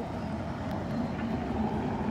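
Steady low background rumble, with a faint click or two about a second in as a button on an e-bike's LCD display is pressed.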